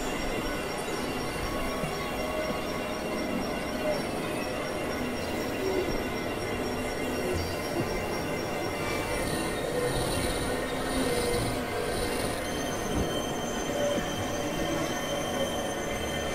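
Experimental electronic noise music: a dense, steady wash of noise with thin high tones held over it, one high tone entering about halfway through and another a little later.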